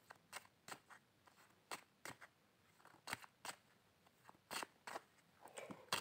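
Faint, irregularly spaced short clicks and light rustles, about a dozen of them, in an otherwise near-silent room.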